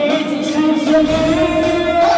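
A man singing into a microphone over a karaoke backing track, holding one long note.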